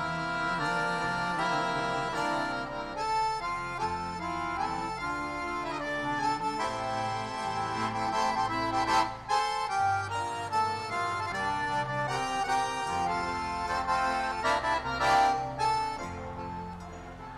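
Live forró band music carried by an accordion playing sustained chords and melody, with a couple of cymbal-like crashes about nine seconds in and near the end.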